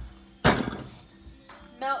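A metal saucepan set down hard on the stove about half a second in: one loud knock with a short ringing decay.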